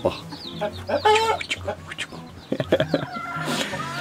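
Sultan chickens clucking, with short high-pitched calls repeating throughout and a louder cluck about a second in.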